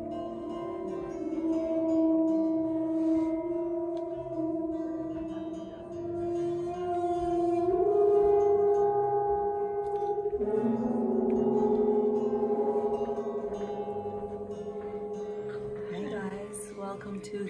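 Large gong played with a friction mallet drawn across its face, giving long, whale-like tones that shift in pitch in steps several times and swell and fade in loudness.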